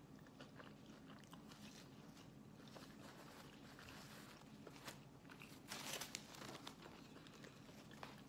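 Quiet close-up mouth sounds of a person chewing a mouthful of burrito, with small soft clicks over a faint steady hum. About six seconds in there is a brief louder rustle of the burrito's paper wrapper being folded back.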